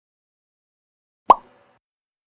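A single short pop sound effect about a second in, sweeping quickly up in pitch and dying away fast, in otherwise silence.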